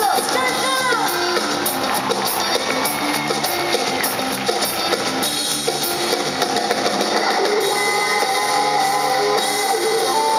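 Live rock band playing at full volume, an electric guitar to the fore over drums, with bending notes in the first second or so.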